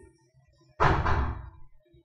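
A single loud thump a little under a second in, fading away over about half a second, over faint background music.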